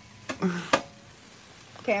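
Chopped vegetables sizzling faintly on a Blackstone flat-top griddle as they are turned with a flat scraper, with one sharp click of the tool on the steel top about three-quarters of a second in.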